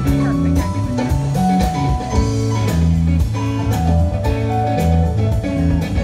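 Live band playing amplified music with electric guitar and drum kit, held guitar notes over a steady drum beat.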